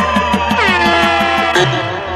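Bass-heavy DJ remix music: rapid, evenly repeated bass hits under a long held tone that slowly falls in pitch, with a falling sweep entering about halfway through and the pattern breaking near the end.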